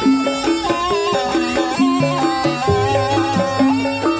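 Traditional Javanese jaranan accompaniment music: a melody of held, stepping notes with a wavering higher line over repeated drum strokes.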